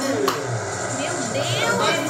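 Indistinct voices: the televised football match and the people in the room talking, with a short click about a quarter second in.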